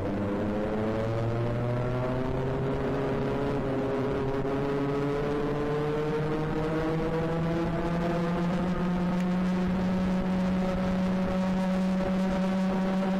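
Racing kart engine heard on board at speed, its pitch climbing slowly and steadily as the kart accelerates, then levelling off near the end.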